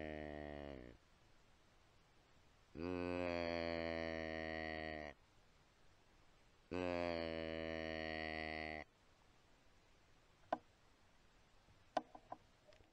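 Hand-held deer call sounding long, steady, low bleats: one ending about a second in, then two more of about two seconds each, evenly spaced. A single sharp click comes near the end.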